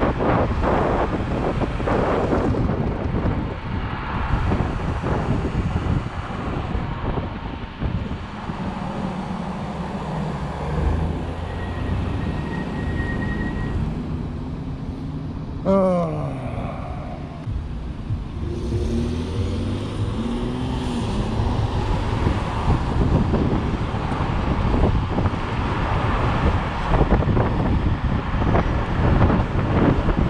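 Wind buffeting the microphone of a Teverun Fighter Supreme 7260R electric scooter riding along a road, with car traffic alongside. The wind dies down through the middle while the scooter is stopped behind cars, with a brief falling whine just past halfway, then builds again as it pulls away.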